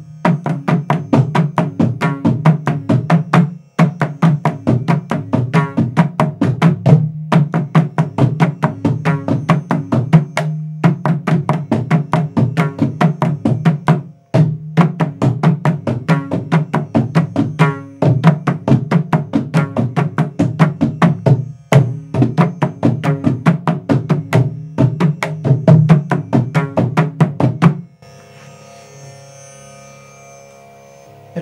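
A mridangam, the double-headed South Indian barrel drum, is played by hand in rapid, continuous strokes, running through its basic beginner stroke exercises one after another. The playing comes in phrases of about three and a half seconds, each with a short break, and stops about two seconds before the end.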